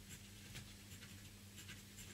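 Faint, irregular scratching of a pen writing on a sheet of paper.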